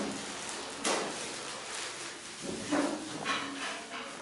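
A few light knocks and clatters over steady room hiss, about four in all, with a faint voice briefly in the background about three quarters of the way through.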